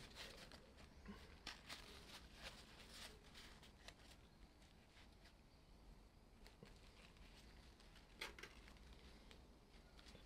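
Near silence: room tone with scattered faint small clicks and taps, a few more in the first few seconds and one slightly stronger tick about eight seconds in.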